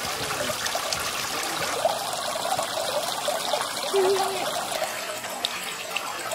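Water from a garden pond's stacked-stone waterfall splashing and trickling steadily into the pond. A brief low tone sounds about four seconds in.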